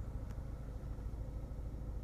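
Land Rover Freelander 2's 2.2-litre four-cylinder turbodiesel idling, a steady low rumble heard from inside the cabin.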